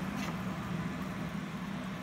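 Aeroponic cloning machine running: a steady low pump hum under the hiss and splash of spray jets misting water inside its clear plastic reservoir.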